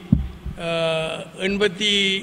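A man's voice at a press-conference microphone, holding one long drawn-out vowel and then going on speaking, with a sharp low thump just after the start.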